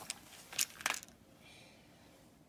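A few brief, soft clicks and rustles within the first second as a toy engine is handled into a Christmas stocking, then it goes quiet.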